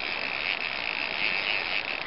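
Fishing reel's drag buzzing steadily as a hooked fish pulls hard and takes line off the spool.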